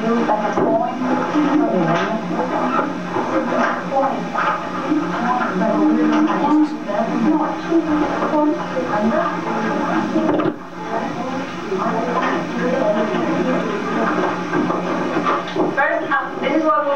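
Indistinct chatter of several people talking at once in a classroom, with a steady low hum, heard as a playback through a television's speaker.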